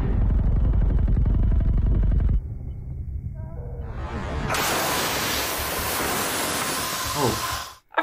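Action-film soundtrack: a dense, low pulsing sound for about two seconds, then a quieter stretch, then a steady loud hiss with a falling sweep, all cutting off abruptly just before the end.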